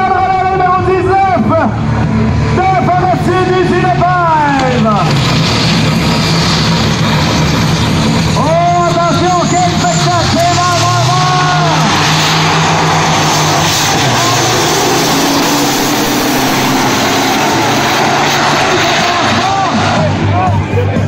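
Diesel drag-racing trucks revving at the line and then running at full throttle down the strip. The engine noise becomes much louder and denser about twelve seconds in, with a voice heard over the earlier part.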